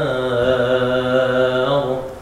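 A man reciting the Qur'an in a melodic chanting style, holding one long sustained note that closes a verse and stops just before the end. The melody is in maqam Jiharkah (Ajam).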